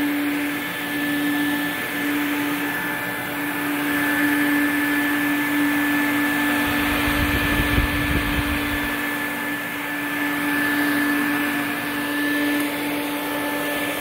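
Quantum X upright water-filtration vacuum running steadily, a continuous motor rush with a constant hum. A low rumble rises in for about two seconds near the middle.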